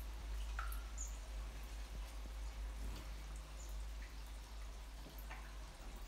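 Quiet background: a low steady hum with a few faint, short ticks and chirps scattered through it.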